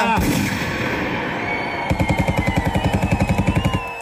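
A last rapped word cuts off into a ringing tail of the beat. About two seconds in, a machine-gun sound effect fires a rapid burst of about fifteen shots a second for roughly two seconds.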